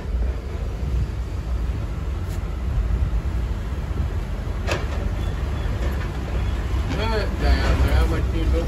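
Steady low background rumble, with a single short click a little under five seconds in and a brief voice near the end.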